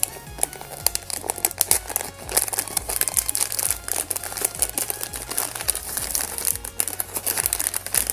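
A clear plastic bag crinkling and rustling in the hands as it is handled, with background music playing underneath.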